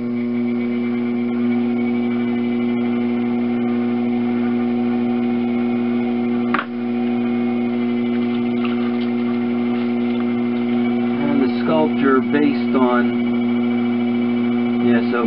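Steady low electric hum of a running potter's wheel motor, with a brief click about six and a half seconds in.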